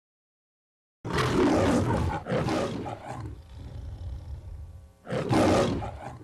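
A lion roaring three times, in the manner of the MGM studio-logo roar: two long roars back to back starting about a second in, then a shorter third roar near the end.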